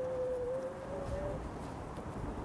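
Mountain e-bike rolling along a dirt trail: low rumble of the tyres and wind on the microphone, with a thin steady whine that rises slowly in pitch and fades out after about a second and a half.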